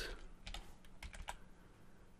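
Computer keyboard typing: several faint keystrokes, unevenly spaced.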